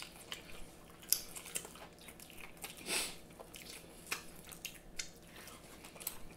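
Soft chewing and mouth sounds of people eating, with scattered small clicks and smacks and one brief louder noise about three seconds in.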